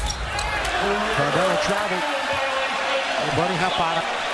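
Basketball broadcast audio: a play-by-play commentator talking over steady arena crowd noise, with a basketball bouncing on the hardwood court.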